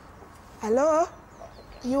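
A short, wavering human vocal cry a little over half a second in, rising in pitch. Near the end a voice starts saying "You are all right."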